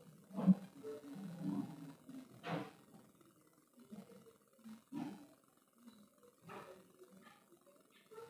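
Faint, muffled audio of a video clip played through the room's loudspeakers: scattered short, irregular sounds, a few of them low-pitched, the loudest about half a second in.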